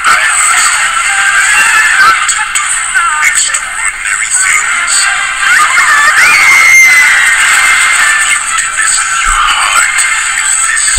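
Music with a singing voice playing from a television's speakers across a room, thin and tinny with almost no bass.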